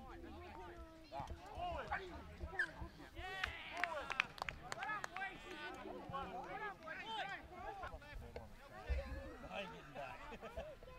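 Rugby league players and sideline spectators calling and shouting, several voices overlapping. There are a few sharp knocks about four seconds in.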